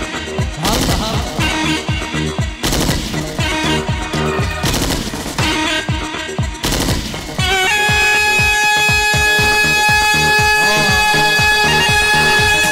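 Live dabke music: a fast, driving drum beat under a short cane flute's melody. About halfway through, the melody settles on one long held note.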